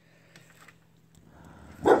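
A bulldog-type dog barks once, short and loud, near the end.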